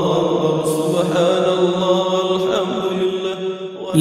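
Chanted vocal intro music: a long held low note under a slowly moving voice line, with no instruments' beat, easing off just before the end.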